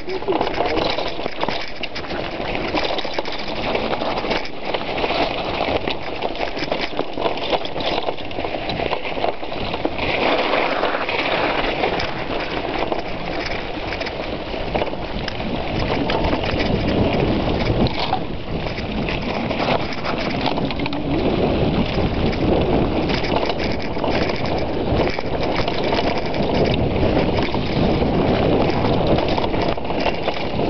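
Mountain bike ridden over a rough trail, heard from a handlebar-mounted camera: continuous rattling and knocking of the bike frame and tyres over bumps, mixed with wind noise.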